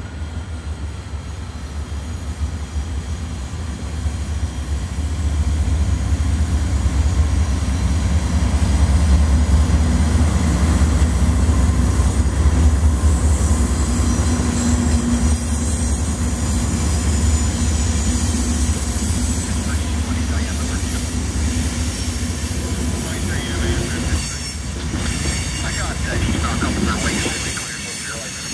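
Norfolk Southern diesel freight locomotives approaching and passing, a deep engine rumble that builds over the first several seconds and stays strong. Near the end, steel wheels of the covered hopper cars clicking over the rail joints as the train rolls by.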